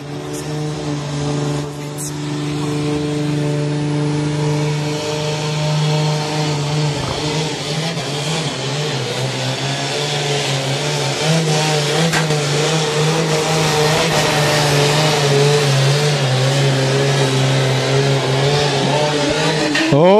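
Diesel engine of a 3.5-tonne sport-class pulling tractor running flat out under full load as it drags the brake sled. It holds one steady, heavy note that steps up slightly in pitch about halfway through, and it grows louder as the run goes on.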